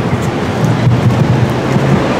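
Steady, loud rumbling noise of wind buffeting the microphone outdoors.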